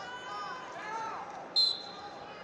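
A referee's whistle gives one short blast near the end, restarting the wrestling bout. It is heard over a background of voices in the arena.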